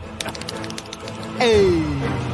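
Cartoon sound effects over background music: a few sharp clicks, then, about a second and a half in, a loud tone that slides down in pitch.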